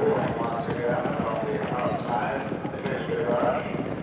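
A field of racehorses galloping on turf, a dense rapid patter of many hoofbeats, with voices faint behind.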